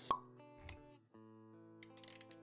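Animated intro sound design: a sharp pop just after the start, a brief low thud, then sustained music notes, with a quick run of clicks near the end.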